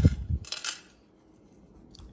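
A low thump right at the start, then about half a second in a brief light metallic jingle of a fine chain necklace being picked up and handled.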